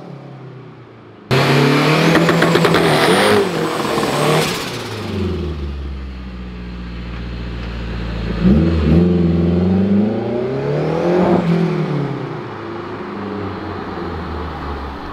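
Turbocharged Honda K20 four-cylinder engine in an Integra DC2 Type R, loud from about a second in as it accelerates hard with a high whine rising above the engine note. It then drops to a steady, deep idle, and near the end it is revved twice, each rise and fall followed by a high whine.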